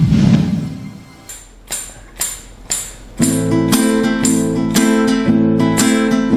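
A whoosh from the intro sting fades over the first second. Then four evenly spaced sharp taps about half a second apart count in, and a nylon-string acoustic guitar starts strumming chords in a steady rhythm just after three seconds in.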